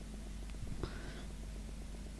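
A pause in a close-held microphone's feed with a steady low hum, broken a little under a second in by one short intake of breath.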